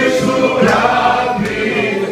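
A group of men singing loudly together in chorus.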